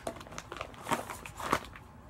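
Plastic packaging of a synthetic clip-on ponytail being handled, giving a few short sharp crackles.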